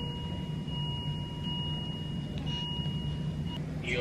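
A steady electronic whine of two thin pitches held together over a low hum, cutting off shortly before the end.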